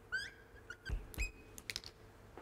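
Dry-erase marker squeaking and tapping on a whiteboard while writing: a few short squeaks, one briefly held, and sharp ticks near the end, with a couple of dull thumps about a second in.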